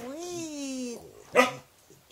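A domestic animal calling: one drawn-out call that falls slowly in pitch over about a second, then a short, loud bark-like cry about a second and a half in.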